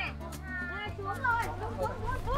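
Voices of children and adults chattering and calling in the background, over faint music with a steady low hum.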